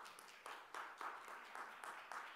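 Light, scattered applause from a small audience, with a few people clapping unevenly.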